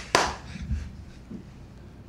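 One sharp hand clap just after the start, its echo dying away over about half a second.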